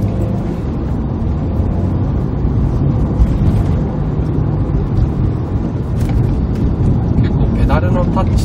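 Cabin sound of a Subaru WRX STI (VAB) being driven on the road: a steady low rumble of its turbocharged flat-four engine and road noise.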